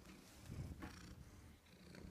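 A domestic cat purring faintly, close to the microphone, in an uneven low rumble that swells a little about half a second in.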